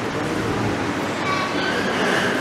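Steady background noise of a large hall, with faint voices coming through briefly.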